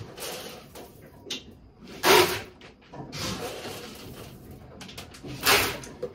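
Dry horse feed being scooped and poured into buckets: rustling, rattling pours with two short, louder pours, one about two seconds in and one near the end.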